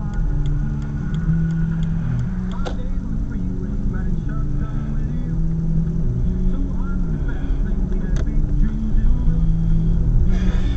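Music with singing from a car radio, heard inside a moving car over the steady low rumble of the engine and road.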